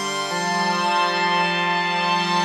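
Behringer DeepMind 6 analogue polyphonic synthesizer playing a sustained ambient pad chord, moving to a new chord about a third of a second in and holding it.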